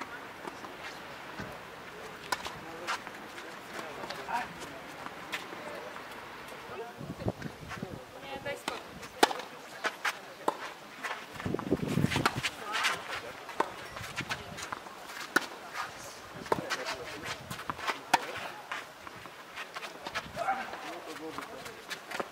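Tennis rally on a clay court: sharp racket-on-ball hits at irregular intervals of a second or more, with footsteps on the clay.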